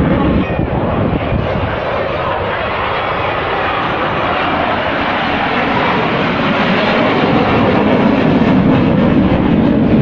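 Fighter jet engine roar from an aircraft flying past overhead, a steady rushing noise that grows a little louder near the end, mixed with crowd voices.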